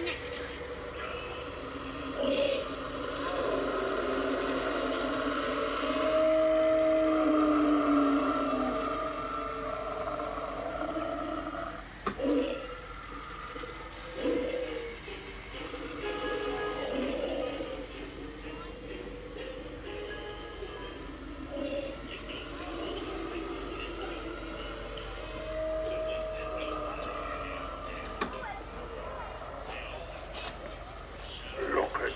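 Halloween animatronic props playing their sound tracks: spooky music mixed with indistinct voices and effects, with a held tone rising out of it twice.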